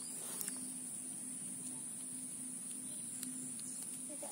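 Steady high-pitched insect chirring over a quiet background, with a few faint clicks as a small climbing perch is handled to free the hook from its mouth.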